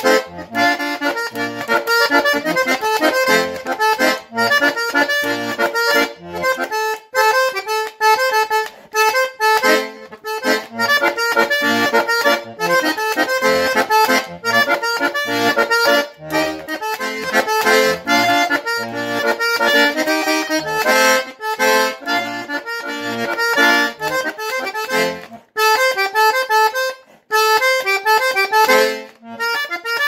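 Hohner Erica two-row diatonic button accordion played solo: a lively tune of quick melody notes on the treble buttons over short, rhythmic low bass notes.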